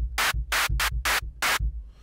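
Synthesized snare made from white noise through a high-pass filter, on the Retrologue synth, struck over and over at about three hits a second. Each hit is a bright hiss with a fairly long tail, because the envelope's sustain is still set too high. A low pulsing runs underneath.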